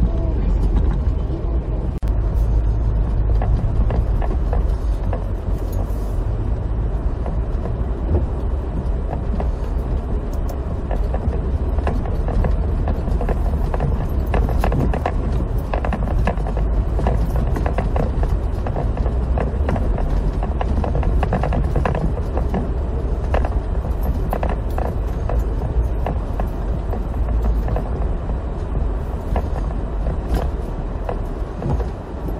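Cabin road noise of a Toyota TownAce van on Dunlop Winter Maxx SV01 studless tyres: a steady low rumble of tyres and drivetrain, with many small clicks and knocks as the tyres run over a rough unpaved forest track.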